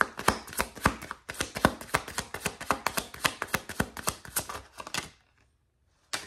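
A deck of tarot cards being shuffled by hand: a rapid run of card clicks and slaps that stops about five seconds in.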